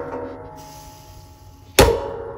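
Clamshell heat press being pushed shut: a metallic ringing with several tones fades through the first second and a half. Near the end a loud clunk as the press clamps down sets the metal ringing again.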